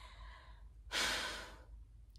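A woman's audible sigh: a breathy rush of air with no voice in it, about a second in, lasting about half a second.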